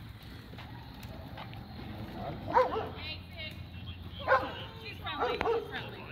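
A small dog barking: two sharp barks, about two and a half and four seconds in, with yips around them and more at the end, over voices and a steady low background rumble.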